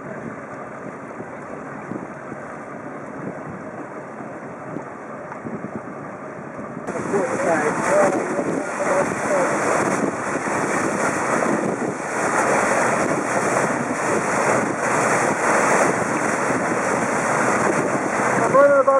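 Motorboats underway: engine noise mixed with rushing water and wind buffeting the microphone. The sound gets suddenly louder about seven seconds in and stays loud.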